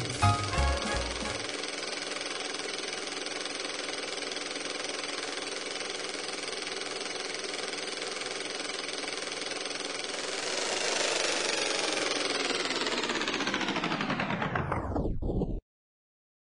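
The band's last note dies away, then a film projector runs with a steady mechanical whir and fast flutter, growing louder past the middle. Near the end it winds down, its pitch falling, and cuts off suddenly.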